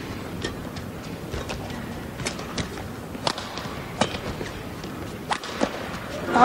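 Badminton rally: several sharp racket strikes on the shuttlecock, roughly one a second, with players' footfalls on the court, over a low crowd murmur in the arena.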